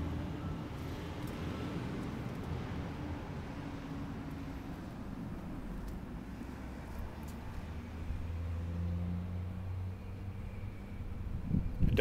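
A motor vehicle engine running, a steady low rumble that swells a little about eight seconds in and eases off again near the end.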